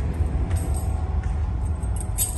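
Steady low rumble of a ship's engines and machinery heard inside the accommodation, with faint light metallic jingling.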